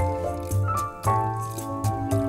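Instrumental background music with held, layered pitched notes over a regular light percussion beat.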